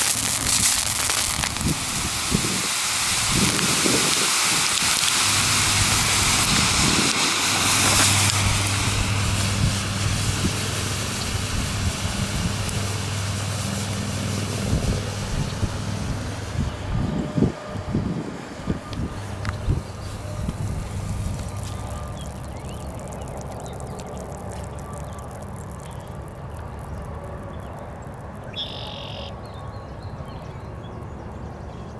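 Tin dioxide–aluminium thermite burning in a clay flower pot: a loud, steady hissing rush that dies down after about 16 seconds and fades to a low background.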